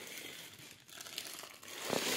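Clear plastic packaging of a hair-accessory set crinkling as it is handled, faint at first and louder near the end.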